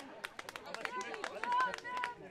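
Faint outdoor baseball-field ambience: distant voices, with a few light clicks.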